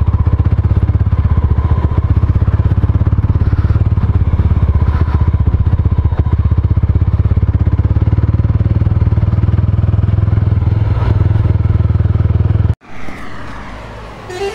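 Mahindra Mojo motorcycle's single-cylinder engine running steadily as the bike rides along, heard loud from the rider's position. It cuts off abruptly near the end, giving way to quieter roadside traffic noise.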